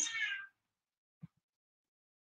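A short, high-pitched cry that falls in pitch over about half a second, followed by a faint tick.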